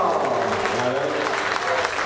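Audience applauding, with voices in the crowd.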